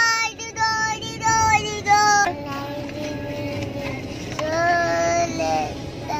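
A young child singing in a high voice: several short held notes in the first two seconds, then longer, lower sustained notes.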